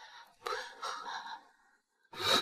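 A young woman gasping: two breathy gasps in quick succession, the second longer.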